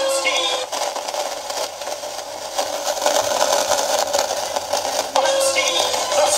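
Tesla NZC 041 record player playing a sung pop record from a 7-inch single through its speaker, the music rough and crackly with hiss. The crackle and weak left channel are suspected to come from a faulty potentiometer.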